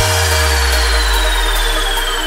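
Electronic intro sting: a deep bass hit at the very start rings on as a low hum that slowly fades, with a thin tone gliding steadily downward above it and faint high ticks at an even pace.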